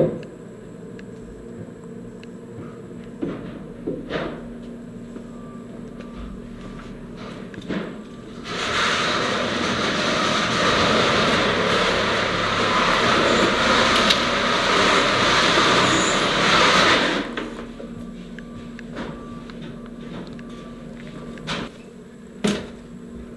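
Faint background with a few short knocks, then about eight seconds in a loud, steady rushing noise starts, runs about nine seconds and cuts off suddenly.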